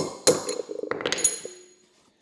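A hammer strikes a steel shaft, used as a drift, several times in quick succession to drive a 6201 ball bearing out of a mini-bike wheel hub. There is a sharp metallic blow at the start, more blows over the next second, and the metal rings briefly after the last one.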